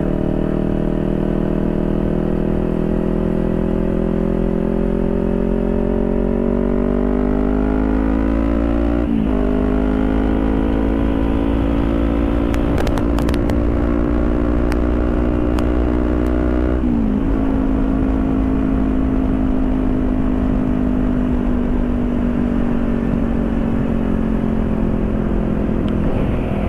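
Motorcycle engine heard from the rider's seat, its pitch climbing steadily under acceleration, dropping sharply and climbing again about nine and seventeen seconds in as the gears are shifted up, then slowly falling as the rider eases off. A steady low wind rumble runs underneath.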